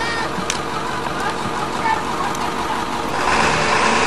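School bus engine running steadily, then growing louder about three seconds in as the bus pulls forward.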